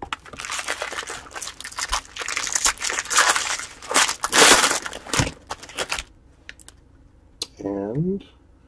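Foil wrapper of a jumbo baseball-card pack being torn open and crumpled by hand: dense crinkling and crackling for about six seconds, loudest a little past halfway, then stopping.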